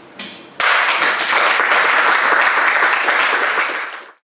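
Audience applauding, starting suddenly about half a second in and dropping away near the end.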